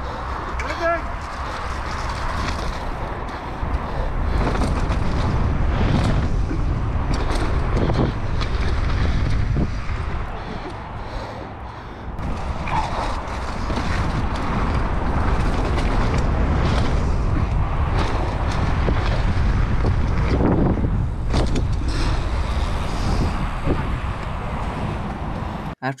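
Mountain bike ridden fast down a rough dirt trail, with rushing wind on the microphone, tyres on loose dirt, and frequent knocks and rattles from the bike over bumps and jump landings. There is a brief lull about ten to twelve seconds in, before the riding noise picks up again.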